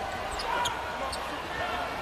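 Live court sound of a basketball game with little crowd noise: a basketball being dribbled on a hardwood floor, with faint voices of players and bench.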